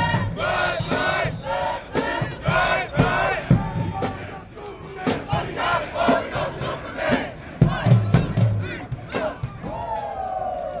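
A group of marching band members chanting and shouting together in rhythm, with loud low thumps under the voices.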